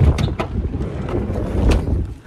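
Strong wind buffeting a phone's microphone: a loud, low rumble that swells and falls with the gusts.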